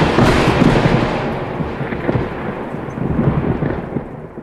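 A thunder-like rumbling sound effect that is loudest at the start, then rolls on and slowly fades away.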